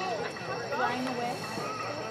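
Several voices calling and shouting over one another on a soccer field, short overlapping cries with no clear words.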